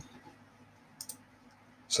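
Computer mouse button clicking twice in quick succession about a second in, faint against a quiet room.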